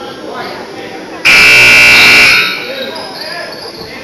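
Gym scoreboard buzzer sounding once: a steady horn tone that starts sharply just over a second in and lasts about a second before dying away, over low crowd chatter.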